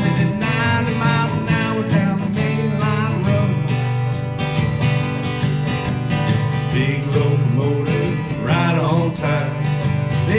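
Two acoustic guitars playing an upbeat country-blues instrumental break, strummed and picked in a steady rhythm between sung verses.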